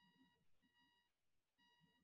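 Near silence: quiet room tone with a very faint electronic beep, a short pitched tone sounding three times.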